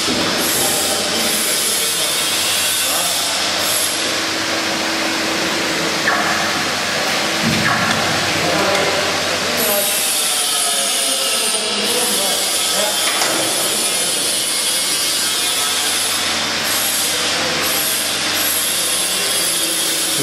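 Workshop machinery or a power tool running steadily, a loud even noise with a thin high whine on top, and faint voices underneath.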